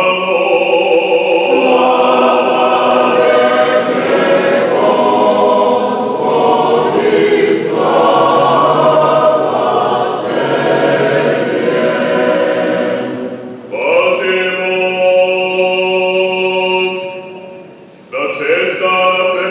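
Church choir singing an unaccompanied Orthodox liturgical response in long held chords. It pauses briefly about fourteen seconds in, then sings one more phrase that fades out near the end.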